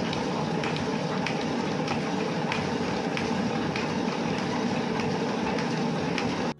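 Small hand-cranked manual washing machine spinning honeycomb to extract honey: a steady rumbling whir with a regular click about every two-thirds of a second as the crank turns.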